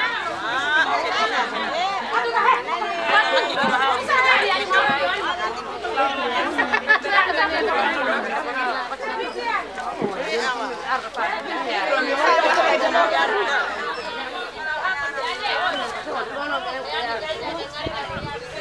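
Chatter of a group of people talking over one another, many overlapping voices with no single speaker standing out.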